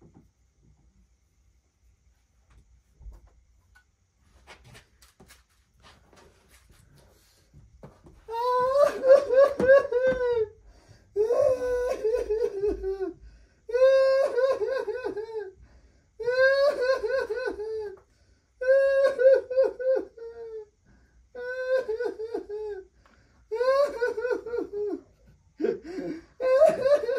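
A person wailing and sobbing in pretend distress: seven long, wavering cries in a row, beginning about eight seconds in after a quiet start. The crying is staged to test a puppy's reaction to someone who seems hurt.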